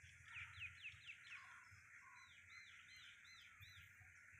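Faint bird calls: a quick run of about five down-slurred notes, then, after a short gap, about five rising-and-falling notes in an even rhythm.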